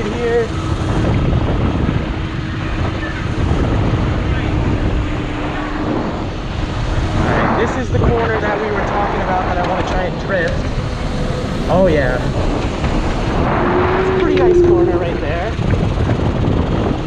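Electric go-kart driving, heard from the driver's seat: a steady rumble of tyres and wind, with a motor whine that rises and falls in pitch.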